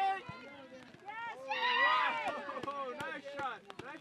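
Several spectators shouting and cheering over one another at a youth soccer shot on goal, loudest about one and a half to two seconds in, with a few short knocks in between.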